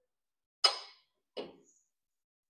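Two sharp metallic clinks about three-quarters of a second apart, the first louder with a short ring, as a carbide-tipped circular saw blade is turned by hand on a saw-sharpening machine to index the next tooth.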